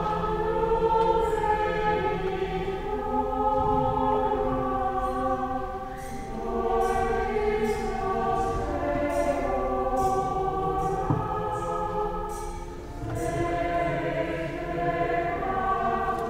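Choir singing in slow, sustained phrases, with several voices held together; the singing eases briefly about six seconds in and again near thirteen seconds before swelling back.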